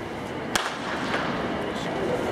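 A single starting-gun shot about half a second in, a sharp crack that sends the sprinters off their blocks at the start of a 100 m race.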